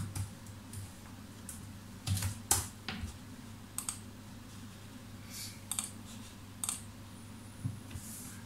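Computer keyboard being typed: short bursts of keystrokes in the first few seconds, then isolated clicks about a second apart, over a faint steady low hum.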